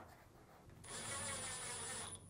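Cordless drill/driver running for a little over a second, driving a Phillips screw into the washer's top cover, with a steady high whine; it starts about a second in after near silence.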